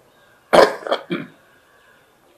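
A man coughing to clear his throat: one sharp cough followed by two shorter, weaker ones.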